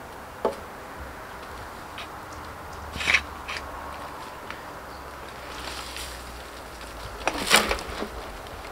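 Pitchfork worked into a compost heap of dry raspberry canes, with rustling and scraping about three seconds in. Near the end comes the loudest sound, a brief rustling crash as a forkful of the dry canes is dropped into a metal wheelbarrow.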